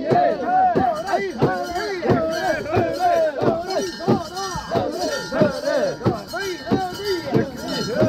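A crowd of mikoshi bearers chanting together in a steady rhythm, with sharp metallic clanks and jingles from the portable shrine's fittings falling on the beat.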